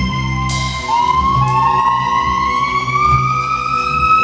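A bowed hybrid string instrument holds a high note, then slides slowly upward in pitch in one long rising glide. Low fretless electric bass notes play underneath.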